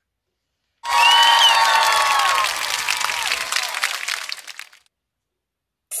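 Applause with cheering voices, starting about a second in and fading out by about five seconds, as at the end of a story.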